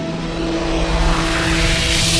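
Outro sound effect: a steady low drone with a few held tones under a rushing noise that grows steadily louder and brighter.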